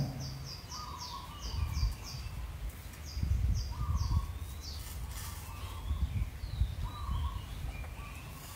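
Birds calling: runs of short high chirps, about four a second, with a few lower calls scattered through, over a low fluctuating rumble.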